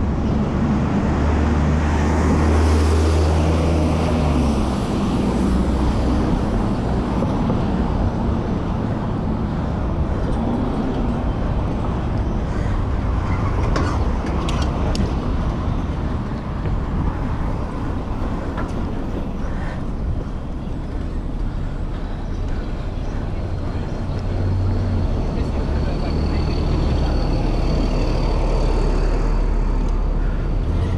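Wind rushing over the microphone of a bicycle-mounted camera while riding, with a steady low rumble that swells and fades, over the noise of city traffic.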